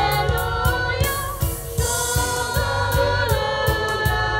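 Church choir singing a hymn, several voices together over an accompaniment with a steady beat.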